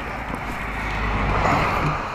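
Road traffic noise that swells and fades, like a car passing on the road, with wind on the microphone.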